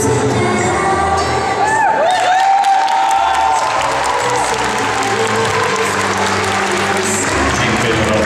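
Latin dance competition music playing, with the bass dropping out briefly about two seconds in while spectators shout and whoop; crowd cheering then carries on over the music.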